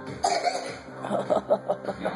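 Young child coughing: one cough just after the start, then a quick run of short coughs about a second in.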